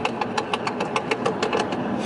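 Tuned BMW 340i's exhaust crackling and popping on overrun, a rapid, irregular string of sharp pops, about seven a second, over a steady engine drone. The pops are unburnt fuel igniting in the exhaust, here strong enough to throw small flames.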